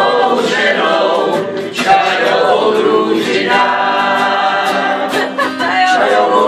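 A mixed group of men's and women's voices singing a song together, accompanied by a strummed acoustic guitar.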